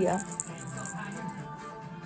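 Small bells on a wire jingling as they are held up and shaken, a light tinkling with two brighter rings early on that fades out within about a second.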